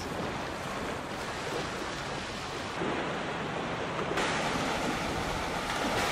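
Small waves breaking and washing on a sandy beach: a steady rushing noise that gets a little louder and brighter about four seconds in.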